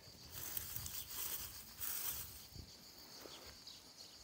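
Faint rustling and pattering of loose, damp soil crumbling from a gloved hand onto dry pine-needle mulch, in a few soft bursts.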